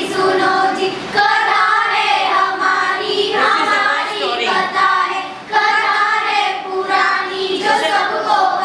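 A group of girls singing a song together, with short breaks between phrases.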